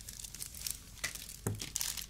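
Plastic packaging crinkling and rustling as small items are handled, with a soft knock about one and a half seconds in.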